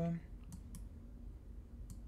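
A computer mouse clicking three times, faintly: two clicks about half a second in and one near the end.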